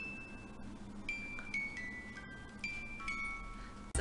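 Small hand-cranked music box playing a slow tune of high, ringing plucked-comb notes, one after another as the crank is turned.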